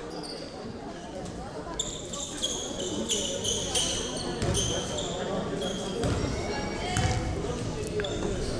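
Basketball bouncing a few times on an indoor hardwood court as the free-throw shooter dribbles, with short high-pitched squeaks or calls repeating from about two seconds in.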